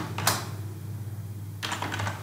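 Typing on a computer keyboard: one keystroke just after the start, a pause, then a quick run of keystrokes near the end, over a low steady hum.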